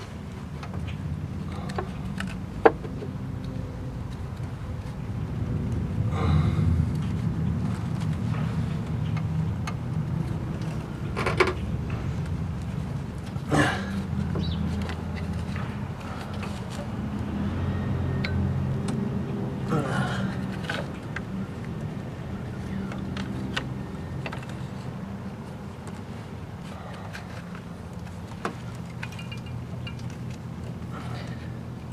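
Hands working a serpentine belt onto the crankshaft pulley under a car: scattered sharp clicks and knocks of belt and metal, a few seconds apart, over a steady low rumble.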